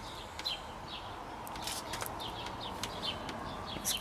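Small birds chirping over and over in the background, with a few faint clicks from the gear-oil tube being handled.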